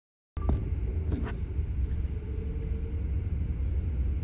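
Steady low road and engine rumble heard inside a car's cabin at highway speed, starting after a brief silent dropout. A faint steady hum runs under it, and a light click comes about a second in.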